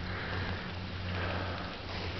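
Two breaths close to the microphone, each a soft rush lasting under a second, over a steady low rumble.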